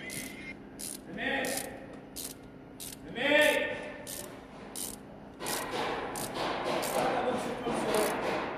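A ratchet wrench clicking in repeated short strokes, about one every two-thirds of a second, as bolts in an engine bay are worked. The clicking turns busier and denser about two-thirds of the way through, with brief voices in between.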